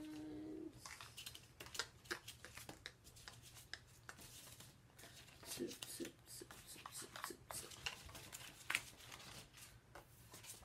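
Paper and packaging being handled: irregular rustling and crinkling with light taps and clicks as sticker sheets and a paper packet are moved about. A short held hum of a voice opens it.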